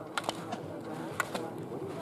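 Slalom gate poles knocked aside by a ski racer, sharp clacks in two quick pairs about a second apart. Faint voices murmur underneath.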